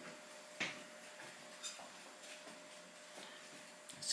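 Quiet room tone with a faint steady hum, broken by two small clicks: a sharper one about half a second in and a fainter one shortly after.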